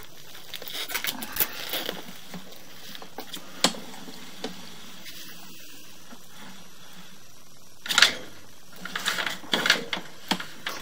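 Irregular handling noise from a sewer inspection camera's push cable being drawn back through the pipe: scattered clicks and rustles, a sharp click a few seconds in, and a louder scrape about eight seconds in followed by more clattering.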